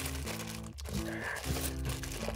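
Soft background music of held notes, with the faint crinkle of a clear plastic bag of coins being opened by hand.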